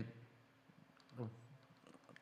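Faint, sparse clicks from a computer mouse as a web page is scrolled, with a brief low vocal hum about a second in.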